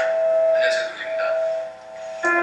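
A piano chord, struck just before, ringing on and fading near the end, with short bits of a voice over it.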